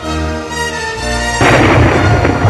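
Orchestral music with sustained notes, then, about one and a half seconds in, a sudden loud crash with a deep rumble beneath it, like a cymbal crash and drum roll, that carries on past the end.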